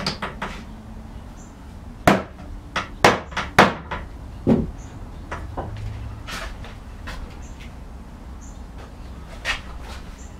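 Sharp wooden knocks on a test-assembled cupboard frame: a quick run of about six knocks over two and a half seconds as the frame parts are knocked and seated together, followed by a few lighter knocks.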